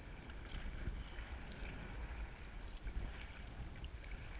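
Wind rumbling on an action camera's microphone, with water splashing and lapping around a sea kayak as it is paddled on choppy sea.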